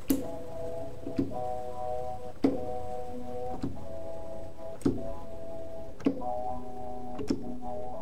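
Chopped sample slices played from a software sampler on a MIDI keyboard: short held chords, each starting with a sharp hit, about one every 1.2 seconds.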